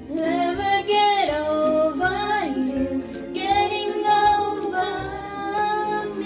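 A girl singing karaoke into a handheld microphone over a backing track with a steady beat, gliding between notes and holding long notes in the second half.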